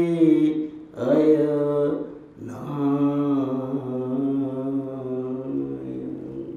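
A man chanting a Sanskrit mantra in long, drawn-out held notes. There are three sustained phrases, and the last, starting about two and a half seconds in, is held for over four seconds.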